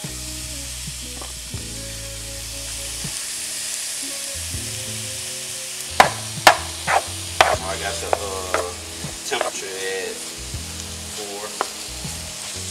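Diced chicken sizzling in hot oil in a nonstick frying pan. About halfway through, a spatula starts stirring the pieces, scraping and knocking sharply against the pan; the knocks are the loudest sounds.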